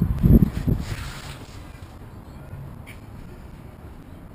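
A few low thumps and a short rustle in the first second or so, as a handheld camera knocks and brushes against a canvas boat cover, then only faint low background noise.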